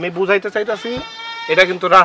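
Men talking in Bengali, with a steady, high-pitched, drawn-out sound held for about half a second near the middle.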